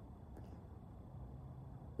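A quiet pause with only a faint, steady low background rumble and no distinct sounds. The chainsaw is not running.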